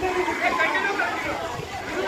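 Several people talking and calling out at once, their voices overlapping.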